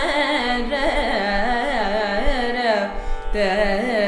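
A woman singing a Carnatic raga alapana in Gamanasrama: wordless, gliding and oscillating phrases over a steady drone, with a brief pause for breath about three seconds in.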